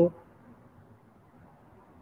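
A woman's drawn-out "so" trailing off at the very start, then a pause of faint room hiss.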